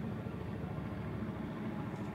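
A steady low mechanical hum with no clear events in it.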